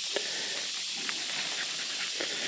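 Steady, even hiss of an insect chorus in summer woods. A couple of faint crackles of twigs and leaf litter come through as a large bolete mushroom is pulled from the ground.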